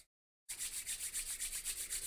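Hands rubbed together briskly close to the microphone: a fast, even run of dry rubbing strokes, starting about half a second in.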